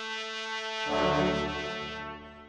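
Classical music played on brass instruments holding long notes. About a second in, a louder, fuller low chord enters, then fades.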